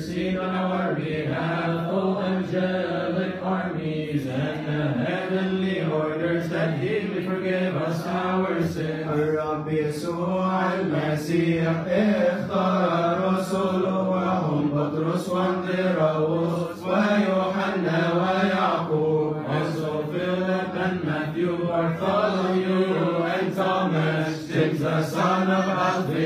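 Male voices chanting a Coptic Orthodox liturgical hymn in a slow, drawn-out, melismatic style, holding and ornamenting long notes without pause.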